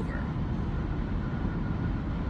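Steady low rumble of road and engine noise heard inside the cabin of a car being driven.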